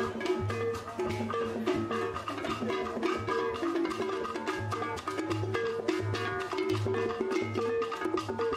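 Band music with a steady dance beat: drums and hand percussion under a repeating pitched melody and a pulsing bass line.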